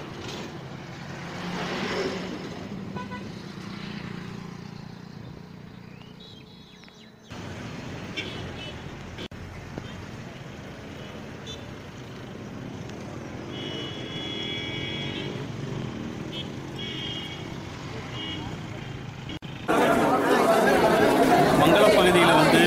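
Road traffic passing, with short vehicle-horn toots several times around the middle. A man's voice starts loudly near the end.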